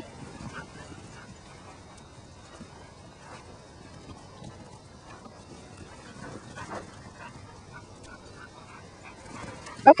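Border collies faintly whining and yipping at a distance, a few short calls over a low background, the clearest one about two-thirds of the way through.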